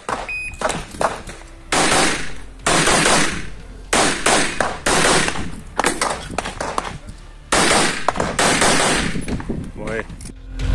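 A shot timer gives a short high start beep, then a CZ Shadow 2 9mm pistol fires rapid shots in pairs and quick strings over the next seven seconds, each crack followed by a short echo.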